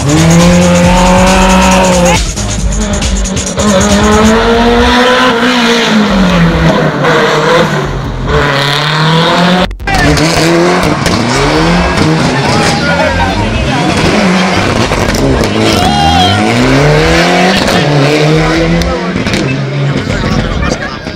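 Rally car engines revving hard, the pitch climbing and dropping again and again through gear changes and lifts, with tyre squeal as the cars slide through tight hairpins. The sound breaks off briefly about halfway, where a different car takes over.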